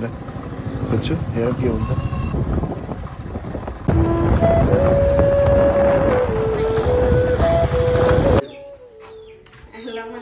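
Royal Enfield motorcycle being ridden: engine and wind noise at the rider's position. About four seconds in, an edit brings louder road noise with a tune of long held notes over it. That cuts off sharply about a second and a half before the end.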